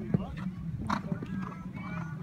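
Hoofbeats of a show-jumping horse landing from a fence and cantering on sand arena footing, with a sharp thud just after the start, over background voices.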